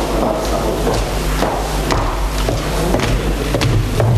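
Room noise in a large council chamber picked up by open microphones: a steady low hum and faint background murmur, with scattered small knocks and clicks of people moving about.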